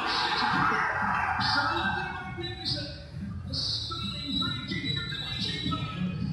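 Snatches of channel-surfed TV audio played back in a hall: music with a voice in it.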